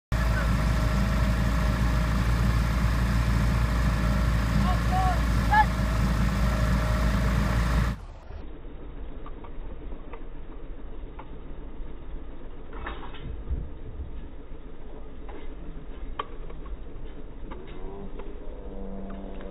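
A steady engine hum with a strong low rumble for about eight seconds, then it cuts off abruptly to a much quieter background with scattered light knocks and clicks.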